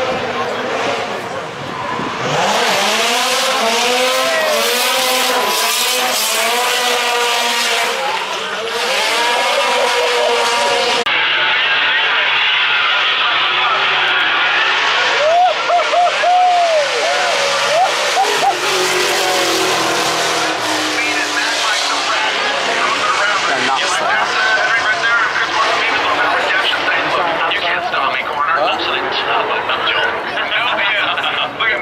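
Drift car engine revving hard, the revs rising and falling over and over as it slides sideways, with tyre squeal over it. About halfway through, the revs come as a run of quick up-and-down blips.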